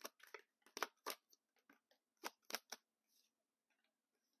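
Tarot cards being handled close to a clip-on mic: a string of about ten sharp, crisp snaps and rustles in the first three seconds, thinning out near the end.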